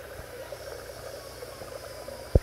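Steady trickle of moving pond water, an even hiss without pauses.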